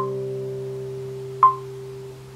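Classical guitar chord ringing out and slowly fading, with two short high pings, one at the start and one about a second and a half in.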